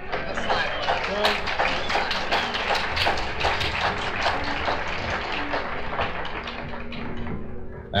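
Live audience applauding, a dense steady patter of clapping, with a few faint held notes underneath.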